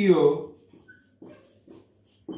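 A man's voice trailing off in a drawn-out falling vowel, then faint short squeaks and taps of a marker writing on a whiteboard.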